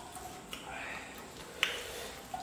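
Quiet eating sounds from hand-eating off a banana leaf, with one sharp click about one and a half seconds in.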